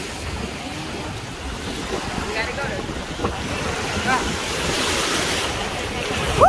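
Small waves washing up onto the sand at the shoreline, with wind buffeting the microphone.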